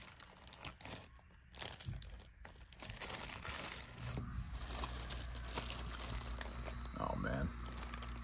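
Clear plastic zip-lock bags crinkling as a hand pushes through and handles them, in short irregular rustles. A low steady hum comes in about four seconds in, and a brief voice is heard near the end.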